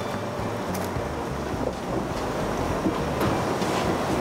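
Steady rushing background noise, like wind on the microphone or a fan, with a few faint clicks.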